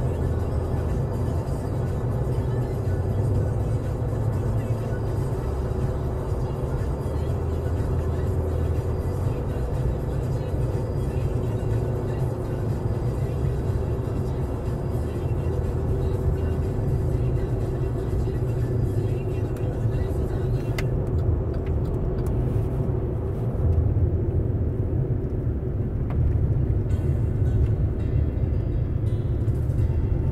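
Steady engine and tyre rumble inside a vehicle's cabin, driving on a snow-covered highway, with music playing underneath. A single click comes about two-thirds of the way through, after which the high hiss is quieter.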